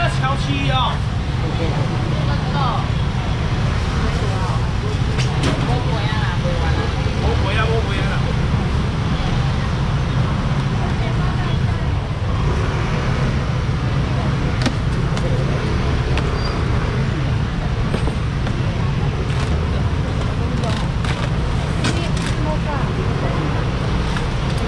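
Busy wet-market ambience: scattered, indistinct voices of shoppers and sellers over a steady low rumble, with occasional light clicks and knocks.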